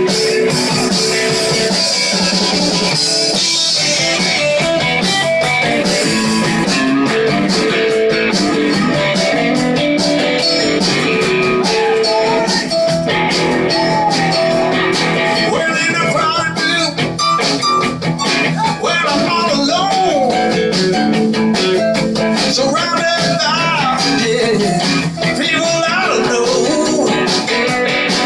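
Live band playing with electric guitars over a drum kit.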